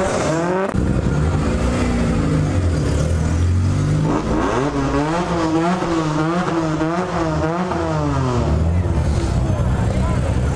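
Car engine revved up and down several times, its pitch rising and falling in quick swings, most strongly in the middle, over a steady low engine rumble.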